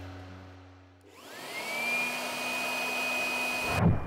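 Handheld electric blower switched on about a second in: the motor whine rises in pitch, then settles into a steady high whine as it blows air into a clear tube. It cuts off suddenly just before the end.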